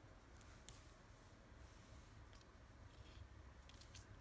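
Near silence, with a few faint, short scratches and clicks from a fingertip or coin working the coating of a scratch-off lottery ticket.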